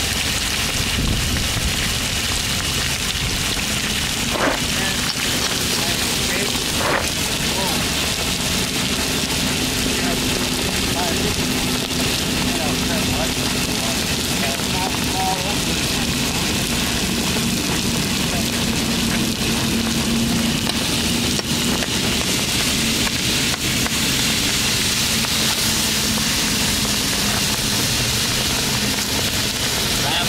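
Water spraying onto a hot, freshly poured slag-covered ore bar, giving a steady sizzling hiss as it quenches.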